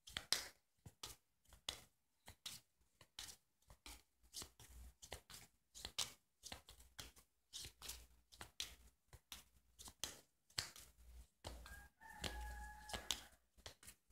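A deck of tarot cards being handled by hand: a faint, irregular run of quick card clicks and flicks. Near the end a faint held tone with one overtone sounds for about a second and a half.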